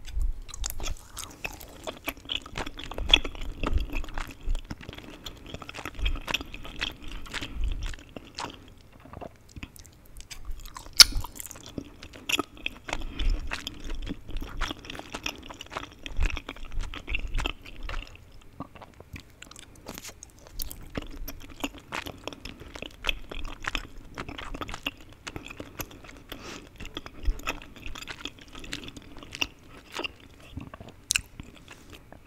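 Close-miked chewing of chewy Korean rice cakes (tteokbokki) in spicy sauce: dense, irregular mouth sounds in three long spells, with short breaks about nine and nineteen seconds in. There is one sharp click about eleven seconds in.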